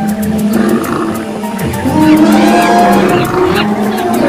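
Animal roars and calls, tiger-like roaring among them, laid over music with a quick, even ticking beat.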